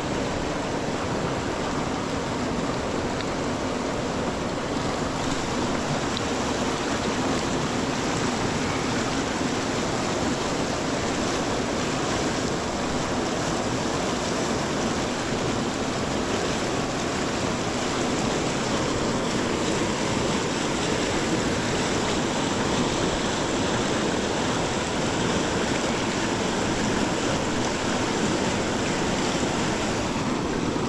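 Steady rushing of a small, fast-flowing river running over rocks close by.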